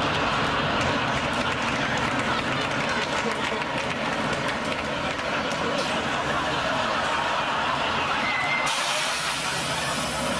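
A single-deck bus's diesel engine running close by, with people talking in the background.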